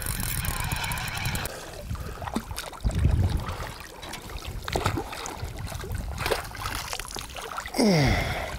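Spinning reel being wound as a hooked carp is played in, with a fast fine clicking in the first second or so. After that comes a low rumble and water sloshing as the fish swirls at the surface near the landing net.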